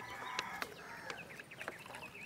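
Hens clucking faintly in the background, with a few light knocks as wooden folding chairs are picked up and handled.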